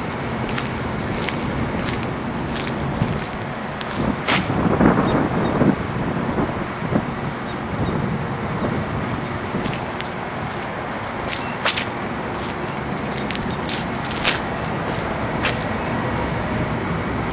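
Steady outdoor rumble and hiss on an open roof, like wind and distant machinery or traffic, with a louder noisy swell about four to six seconds in. Scattered sharp clicks, clustered late.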